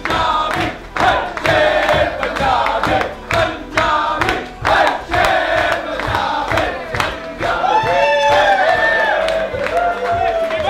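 A group of men singing a team victory song together at full voice while clapping along in time. Louder, higher calls rise and fall over the singing in the last few seconds.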